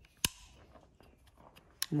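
A sharp click about a quarter of a second in as the old, corroded electric drill's metal housing is handled, then quiet, with a lighter click near the end.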